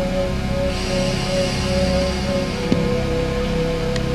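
Horror film score: a steady low drone with a held tone that pulses at first and then sustains, under a layer of hiss.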